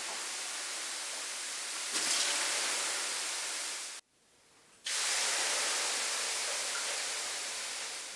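Water ladled onto the hot stones of an electric sauna heater, hissing into steam. The hiss swells about two seconds in and cuts off suddenly halfway. A second burst of hissing starts a moment later and slowly fades.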